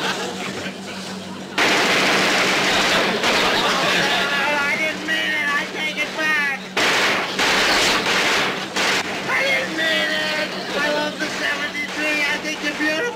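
Machine-gun fire from PT-73's deck guns: a long sustained burst starting about a second and a half in, then a second burst after a brief break near the middle, with voices over it.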